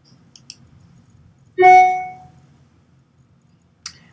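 A single brief musical note, loud against the quiet, about one and a half seconds in, holding one pitch and fading away over about half a second. A few faint clicks come before it and a sharper click comes near the end.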